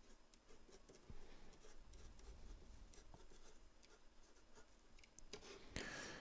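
A pen writing on paper: faint, irregular scratching strokes as a word is written out.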